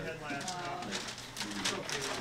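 Indistinct voices talking, with no words that can be made out.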